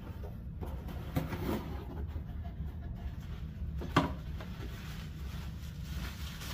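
Cardboard box and plastic-bagged contents being handled as the box is opened: rustling and a few short knocks, the sharpest about four seconds in, over a steady low hum.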